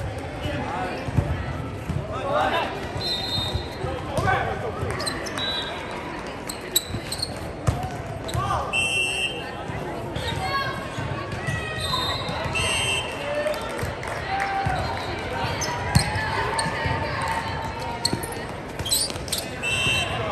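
Indoor volleyball game sounds in a large reverberant gym: sneakers squeaking on the court floor and the thumps of the ball being hit, with voices calling out across the hall.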